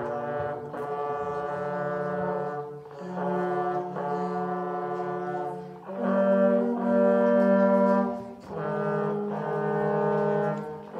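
Trio of student trombones playing a slow piece in harmony: long held chords in phrases of about three seconds, with short breaks between them.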